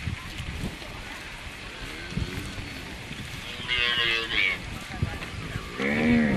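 Lowing from a herd of long-horned cattle on the move. There are a few separate calls: one about two seconds in, a louder, higher-pitched one around four seconds, and a loud call that falls in pitch near the end.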